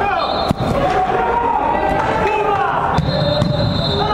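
A football kicked on an indoor five-a-side pitch: two sharp thuds, about half a second in and about three seconds in, over players and onlookers calling out in a large hall.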